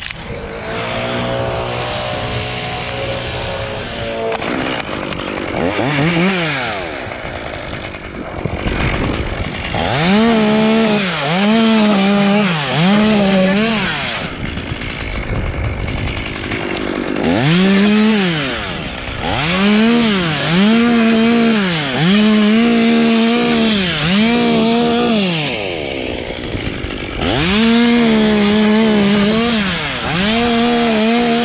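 A chainsaw cutting through dead palm fronds and husk. It runs at a steady pitch for the first few seconds, then is revved in a series of short bursts, each rising and falling in pitch, about one a second.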